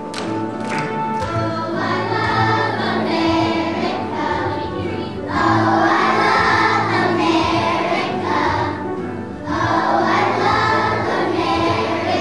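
A choir of kindergarten children singing with instrumental accompaniment. The voices grow louder about five seconds in and again near the end.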